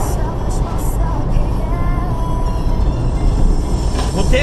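Car engine and road noise heard from inside the cabin as a steady low rumble, with music playing alongside.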